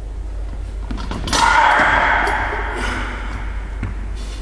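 Loaded 130 kg barbell lifted off the hooks of squat stands: a few sharp clicks, then a metallic clank and plate rattle about a second in that rings out in the large hall and fades over a second or two, over a steady low hum.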